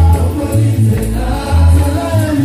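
A choir and congregation singing a gospel song over a strong bass line, with a tambourine keeping the beat.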